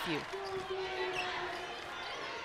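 Basketball being dribbled on a hardwood court over a low arena crowd murmur, with a faint steady tone held for about a second and a half.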